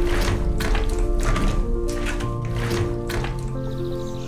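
Background music of sustained, held notes, with several sharp taps falling at uneven intervals through it.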